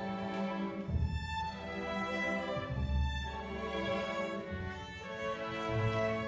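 A school string orchestra of violins, cellos and double bass playing sustained bowed notes, with low bass notes changing every second or two.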